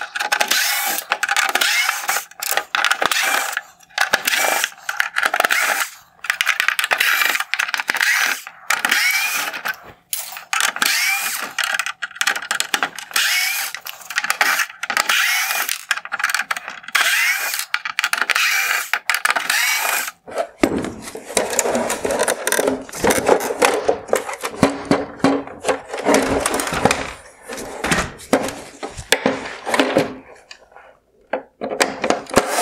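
Screwdriver backing T10 Torx screws out of a plastic headlight housing, in many short spells with brief pauses between them. About two-thirds of the way through the sound turns lower and duller.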